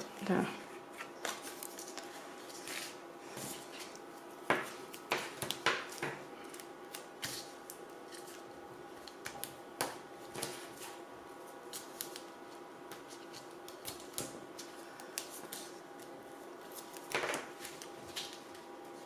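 Cardstock and paper pieces being handled and pressed down by hand: scattered rustles, crinkles and light taps, with a faint steady hum underneath.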